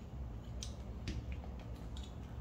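Three faint clicks of metal parts being handled on a coil-spring rear shock absorber held in a spring compressor, over a steady low hum.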